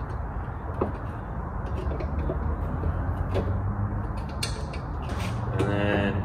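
A few sharp metallic clicks and creaks, spaced irregularly, as cotter pins are pushed into the ends of a CURT friction anti-sway bar at a trailer hitch, over a steady low hum.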